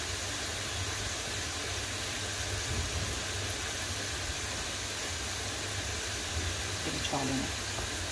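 A steady low hum under an even hiss, unchanging throughout, with a faint voice near the end.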